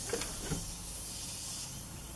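Airbrush spraying paint: a steady hiss of air, with a couple of faint knocks about half a second in.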